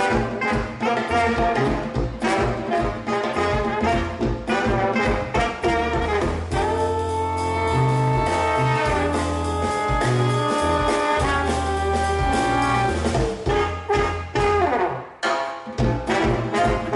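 Jazz music with a brass horn section. It plays a choppy rhythmic passage, then long held chords through the middle, then a brief drop shortly before the end before the band comes back in.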